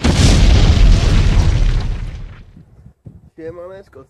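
A boom sound effect: a sudden loud explosion with a deep rumble that dies away over about two seconds. A man's voice starts near the end.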